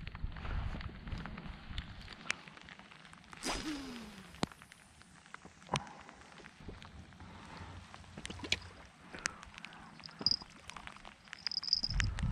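Fishing rod, reel and line handled in a rain jacket: rustling and scattered small clicks, with a louder swish about three and a half seconds in as the baited line is cast.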